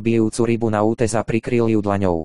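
Synthetic male text-to-speech voice (RHVoice 'Ondro' Slovak voice) reading narration aloud.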